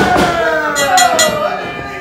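A long wordless yell that falls steadily in pitch, with a few sharp knocks about a second in.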